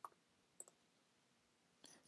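Near silence with a few faint, short clicks of computer keys being typed.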